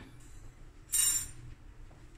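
A small yellow mustard-powder container shaken over a jug of milk: one short, bright clinking rattle about a second in.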